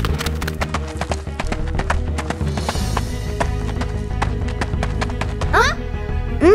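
Cartoon soundtrack music with a quick, steady clicking rhythm like clip-clopping, and a short rising-and-falling vocal squeal near the end.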